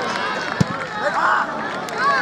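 Football players shouting and calling to each other on the pitch, with one sharp thump of the ball being kicked about half a second in.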